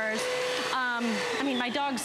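Bissell Powerglide Lift-Off Pet upright vacuum running with a steady whine. About a second and a half in, the whine drops in pitch as the motor is switched off and winds down.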